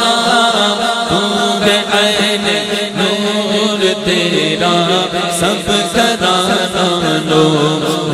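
Urdu devotional naat sung by a male voice in a melismatic, chant-like melody over a steady sustained drone, with a quick low rhythmic pulse underneath.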